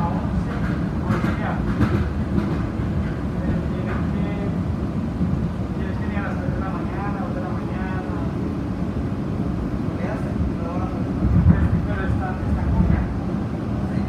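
Airport automated people mover car running along its elevated guideway: a steady low rumble of the car in motion. Indistinct voices are heard over it at times.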